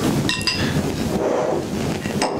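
A steel shaft and steel block being handled together on a tabletop: one ringing metal clink about half a second in, amid light handling noise.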